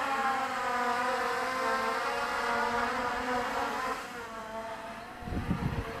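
Quadcopter's four brushless motors (Avroto 770kv, on a 4S pack) and propellers in flight, a steady multi-tone whine that is loudest at first and fades after about four seconds as the craft moves away. A low rumble comes in near the end.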